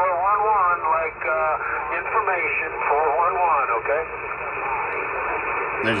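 Voices of other stations heard through the speaker of a Uniden Grant XL CB radio on single sideband receive: thin, narrow-band speech over a steady hiss.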